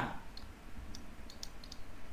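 Faint, scattered clicks of a stylus tapping and sliding on a tablet screen while handwriting.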